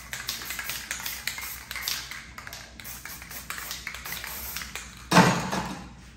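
Aerosol spray-paint can being shaken, its mixing ball rattling in quick, dense clicks over a hiss. A louder burst of hiss comes about five seconds in.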